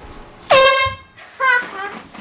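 A handheld air horn gives one loud blast of about half a second, its pitch dropping briefly as it starts. A shorter cry follows about a second later.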